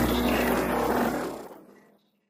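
Electronic music with a low, steady drone, fading out over the last second to silence.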